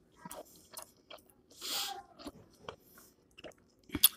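A person chewing a mouthful of food, with scattered wet mouth clicks and a short breathy hiss about one and a half seconds in.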